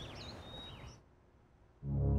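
Birds chirping over a faint hiss of ambience, dying away after about a second. A brief near-silence follows, then background music with a low bass and a flute comes in just before the end.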